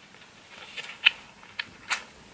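Cardboard hang tags on a fleece being handled: a few short, sharp paper clicks and rustles, the loudest about a second in and another just before the end.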